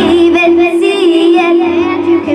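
A young girl singing solo into a handheld microphone, her melody sliding between notes over backing music of steady held notes and a low bass line.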